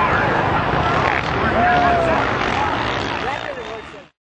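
Several voices talking over one another, with a motorcycle engine running underneath in the background. The sound cuts off abruptly at the very end.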